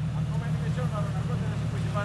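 Jeep Cherokee XJ engine running at steady low revs under load as the truck crawls up a steep dirt slope, a continuous low hum with faint voices over it.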